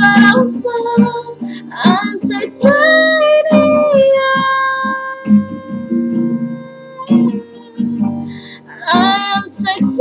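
Acoustic guitar strummed under a female voice singing long held notes, one held for about four seconds in the middle.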